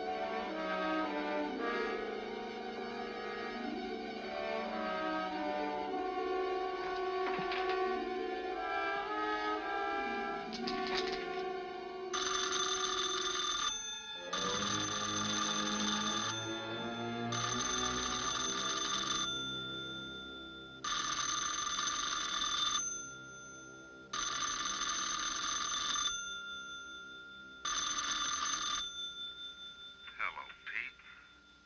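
Music with shifting notes, then, from about twelve seconds in, a wall telephone's bell ringing six times in bursts of about two seconds with short pauses between, over quieter music.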